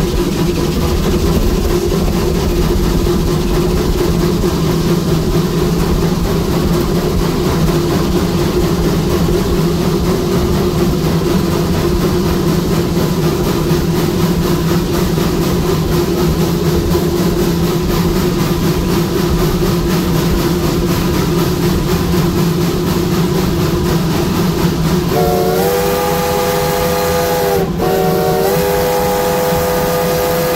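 Steady hiss and hum in the cab of the 1916 Baldwin 2-8-0 steam locomotive V&T #29. Near the end its chime steam whistle sounds several notes at once: one long blast, a brief break, then a second blast.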